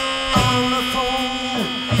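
A live rockabilly and rhythm-and-blues band playing an instrumental passage between vocal lines: upright bass, electric guitar, drums and saxophone, with sustained, slightly bending melody notes over a steady bass line.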